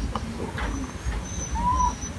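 A short, faint animal call, rising and falling once in pitch, about three-quarters of the way through, over a low background rumble and a thin steady high whine.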